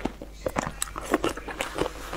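Close-miked chewing of a mouthful of noodles and vegetables: smacking, crunching mouth sounds in short clicks, several a second.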